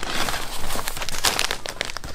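Clear plastic bag around a folded T-shirt crinkling and crackling as it is handled and lifted.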